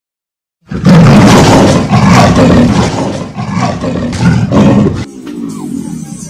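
A loud roar with music, in repeated surges, starting under a second in and dropping away sharply just after five seconds.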